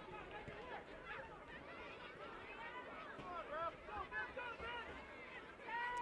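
Faint, distant voices of several people at once calling and chattering across a soccer field, with no single voice close.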